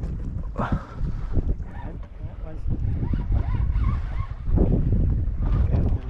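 Wind buffeting the microphone with a low rumble, loudest in the last two seconds, over choppy lake water around a small boat.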